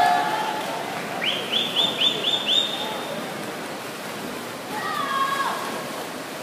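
Swim-meet spectators cheering a race: a run of five quick rising whistles about a second in, and shouted cheers near the end, over a steady hiss of pool-hall noise.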